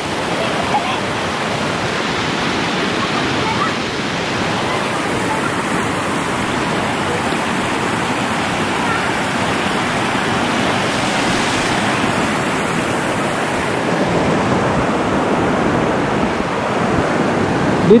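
Shallow, clear river flowing fast over rocks and pebbles: a steady, even rush of running water with small cascades over the stones.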